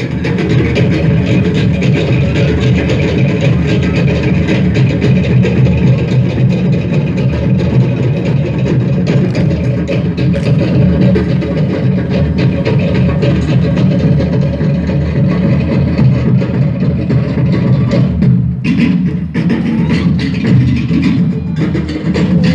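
Tahitian drum ensemble playing a fast rhythm for an ʻōteʻa dance: rapid, sharp strokes of wooden slit drums (toʻere) over deep pahu drum beats.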